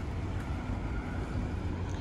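Steady low outdoor rumble: wind buffeting the phone's microphone over faint, steady traffic noise from a nearby street.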